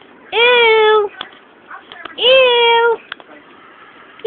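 A domestic cat meowing twice: two drawn-out calls, each rising then holding, about two seconds apart, with a couple of faint clicks between them.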